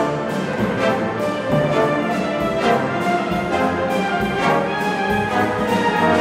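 A high-school wind band playing a brisk piece: full brass and woodwinds sounding together, with percussion strokes cutting through at a regular pulse.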